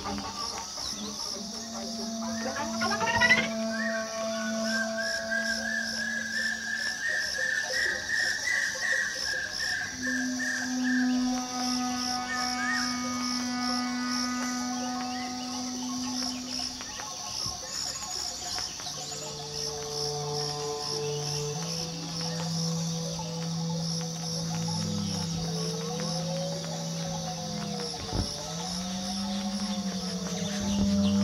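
Experimental turntable music from several vinyl records mixed live: layered held tones that shift every few seconds over a steady, rapid high pulsing pattern, with a sharp click about three seconds in and swooping, bending tones near the end.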